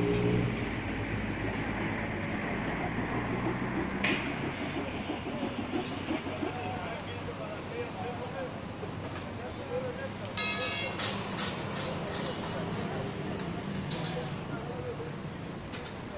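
Outdoor street and building-site background: a vehicle engine fades out in the first second, leaving a steady traffic hum with faint distant voices. About ten seconds in comes a quick run of sharp clicks and knocks.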